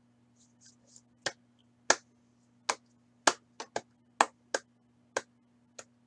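About ten sharp, irregularly spaced clicks, a few tenths of a second to most of a second apart, starting about a second in, over a faint steady electrical hum. A few soft rustles come just before the first click.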